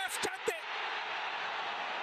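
Televised football match sound: a commentator's voice for a moment, then a steady wash of stadium crowd noise.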